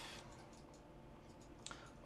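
Near silence with a single computer mouse click near the end.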